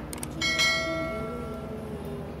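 A light click, then a metal object struck once about half a second in: a clear ringing tone with several overtones that fades away over about a second.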